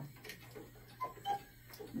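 Mechanical wall clock ticking in a quiet room, faint and even, under a low steady hum.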